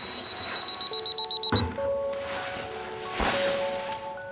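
Electronic alarm clock beeping at a high pitch, its beeps coming faster and faster until a thunk cuts it off about one and a half seconds in. Soft held music notes and two whooshes follow.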